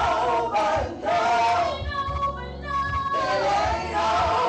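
Women singing gospel through microphones: a lead voice carrying held, bending notes, with backing singers.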